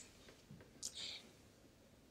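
Near silence: room tone, with one faint short hiss about a second in.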